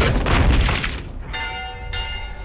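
A loud booming crash, then a large warning bell struck about a second and a quarter in, ringing on with a steady, many-toned sound.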